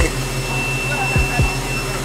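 Steady cabin noise of a private jet: an even low hum and rush with a thin, high, steady whine.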